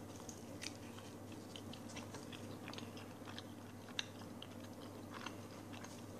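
A man biting into and chewing a mouthful of pizza: faint, irregular small clicks and crunches of chewing, with one sharper click about four seconds in.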